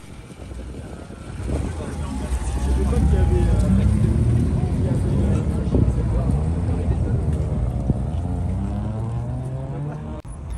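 Pre-war Bentley's engine pulling away in first gear at low speed, its note swelling from about a second and a half in and rising and falling in pitch as it is driven off, climbing again near the end.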